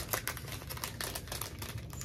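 Small plastic jewelry packaging crinkling and rustling in the hands, an irregular run of quick crackles and clicks.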